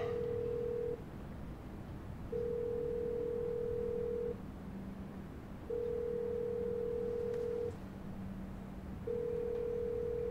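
Telephone ringback tone heard through the phone: a steady beep about two seconds long that repeats every three and a half seconds or so, the sign of a call ringing at the other end and not yet answered.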